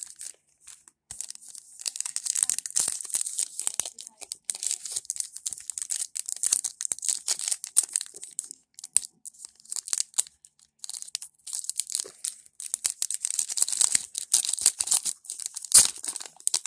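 Foil trading-card pack wrappers crinkling in spells as the packs are handled in the hands. Near the end a pack is torn open, the loudest sound.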